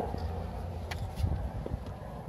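A few faint, light clicks and taps from tools and parts being handled while working under a car, over a low rumble.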